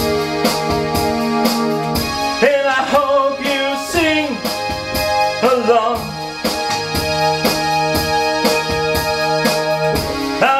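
Instrumental break of a pop song: held electronic-keyboard chords over a steady drum beat, with a bending, wavering lead melody coming in a couple of times.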